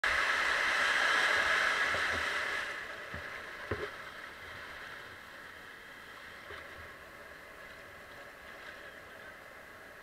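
Water rushing over a river weir, a loud steady rush for the first few seconds that then falls away to a quieter continuous roar of white water. A couple of faint knocks about three seconds in.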